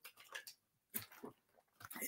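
A few faint, short gulps and swallowing sounds of a man drinking from a plastic water bottle.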